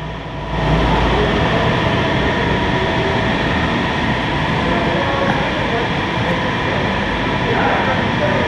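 Workshop air compressor running with a steady, loud rushing noise that starts about half a second in.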